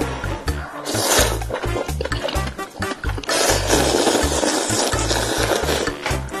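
Slurping of instant ramen noodles: a short slurp about a second in, then a longer slurp from about halfway through. Background music with a steady bass beat plays under it.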